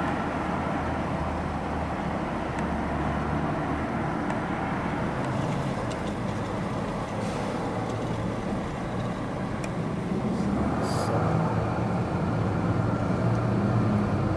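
Steady street traffic noise with a low engine hum.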